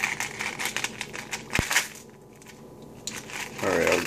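Clear plastic candy tube being handled and opened: crinkling and clicking of the plastic, with one sharp snap about a second and a half in and more clicks near the end.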